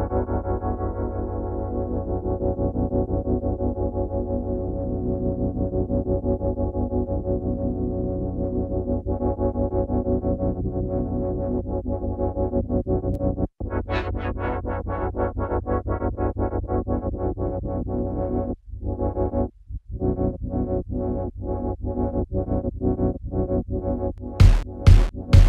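A sustained synthesizer chord played through a frequency-shifter plugin whose filter cutoff is swept by a ramp-shaped custom LFO, so the sound pumps in a fast, even rhythm like fake sidechain compression. It cuts out briefly about halfway through and again for about a second later on, and is brighter after the first break.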